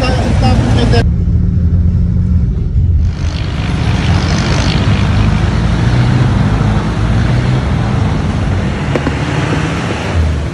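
Vehicle engine noise: a steady low engine rumble, then from about three seconds in, fuller road-traffic noise with engines running.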